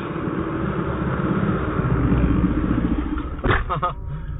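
Road traffic rumble from a passing motor vehicle, swelling toward the middle and then easing off, followed by a brief cluster of sharp knocks near the end.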